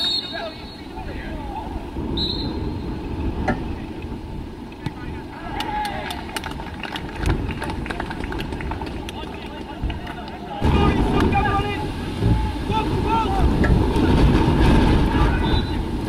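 Open-air football match heard from the touchline: players' shouts and calls over a low rumble of wind on the microphone, with a few sharp knocks. The rumble grows louder about ten seconds in.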